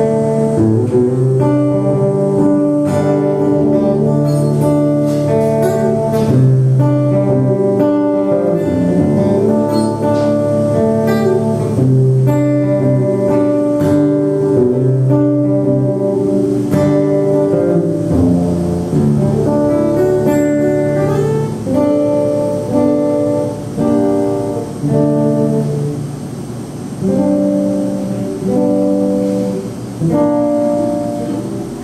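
Acoustic guitar playing chords in an instrumental passage with no singing. The chords are held at first, then come shorter and more broken up in the last several seconds.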